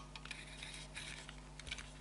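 Faint small clicks and taps of two diecast toy cars being handled and turned around on a hard tabletop, over a low steady hum.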